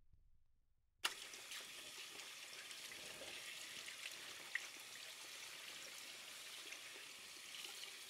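Tap water running into a sink as hands are rinsed under the stream, starting abruptly about a second in.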